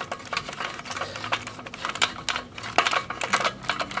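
Irregular sharp clicks and plastic rattles as a clamp is released from a lawnmower's tensioned recoil starter and the housing is handled, over a faint steady low hum.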